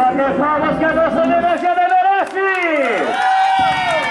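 A singing voice holding long notes that bend and glide up and down, over crowd voices.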